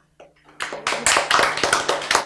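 A quick run of hand claps starting about half a second in, mixed with some voice.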